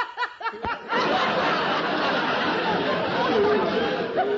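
A few short laughs from one voice, then a studio audience laughing together for about three seconds.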